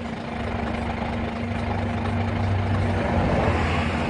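A truck engine idling nearby: a steady low hum with one constant tone, growing a little louder over the few seconds.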